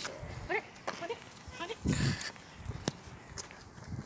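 Faint, scattered speech from a group of boys walking, with a few short clicks and a louder dull bump about two seconds in.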